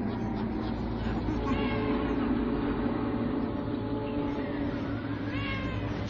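Intro music of steady held low tones, over which two pitched cries rise and fall: one about a second and a half in, another near the end.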